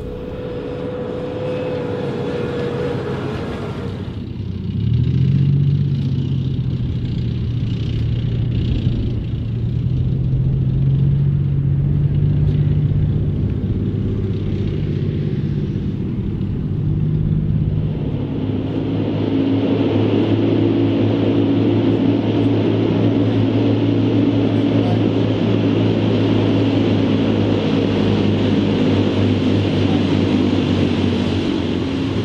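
Diesel engines of wheeled armoured military vehicles running as they drive on dirt tracks. The engine note changes abruptly twice, about five seconds in and again after about eighteen seconds, with a lower, heavier engine sound in the middle part.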